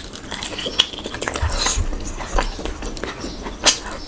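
Close-miked eating sounds of a mouthful of oily rice and curry being chewed: wet chewing, lip smacks and sharp mouth clicks, with a louder smack near the end.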